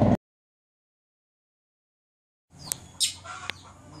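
The sound cuts out to dead silence for about two seconds. Then an outdoor recording starts with several sharp clicks and short bird calls.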